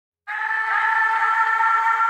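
Music: a steady held chord of several sustained notes that starts about a quarter second in, with no beat yet.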